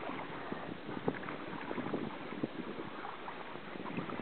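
Wind on the microphone over lapping water, with scattered faint irregular ticks.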